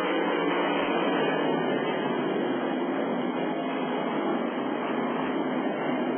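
The massed V8 engines of a full field of winged sprint cars running hard together as a feature race gets under way. They make a steady, dense engine noise with no single car standing out.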